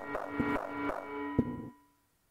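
Homemade synthesizer playing an electronic pattern: buzzy repeating tones over sharp percussive clicks about two a second, with a thin steady high tone above. It stops shortly before the end.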